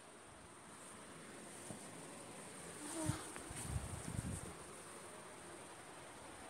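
Low, steady hiss of a gas burner under a steel pot of sugar syrup heating for caramel. From about three to four and a half seconds in there is a short spell of low buzzing and rustling.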